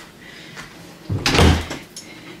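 A front door swung shut, closing with a single thud a little over a second in.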